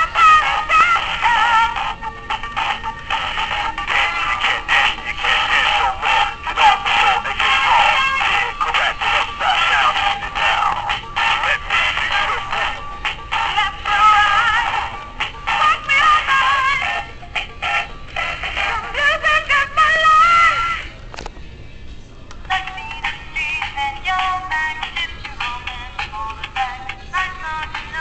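A song with electronic-sounding singing played through a small, tinny speaker, with almost nothing in the bass, typical of a battery-operated animated Halloween decoration. It stops briefly about three quarters of the way in, then a second tune starts.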